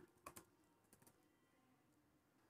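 Near silence: room tone with a couple of faint clicks shortly after the start.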